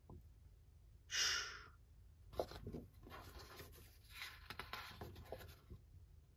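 Large printed paper sheets being handled: a short whoosh about a second in, then a run of soft rustles and scrapes as the sheets slide past each other.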